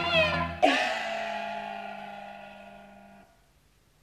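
Peking opera instrumental accompaniment in the xipi yuanban mode, for a laosheng aria, with no singing. About half a second in, the music closes on a sharp struck accent that rings and fades away, then stops a little after three seconds.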